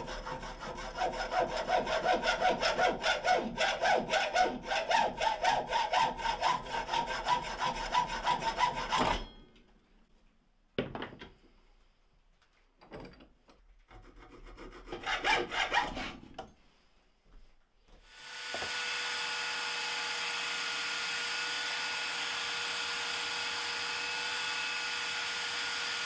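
A hacksaw cuts through an aluminium bar with quick back-and-forth strokes for about nine seconds. After a pause come a few short rasping strokes of a hand file. Then, a little past halfway, an electric belt sander starts and runs steadily with a constant whine.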